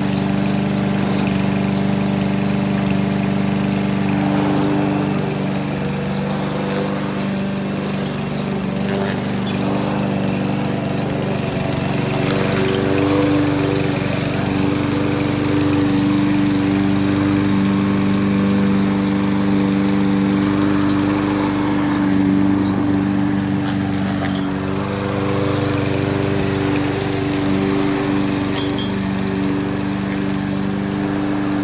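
Small petrol engine of a walk-behind rotary lawn mower running steadily as it is pushed across a lawn, its note wavering and dipping twice.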